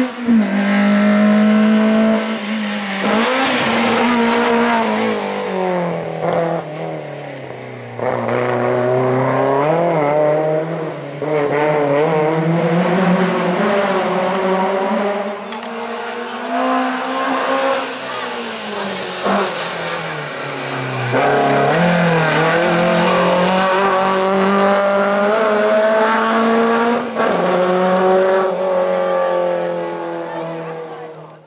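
Racing car engine worked hard through a slalom course: the note climbs under full throttle, drops as the driver lifts and brakes for the cone chicanes, then climbs again, over and over.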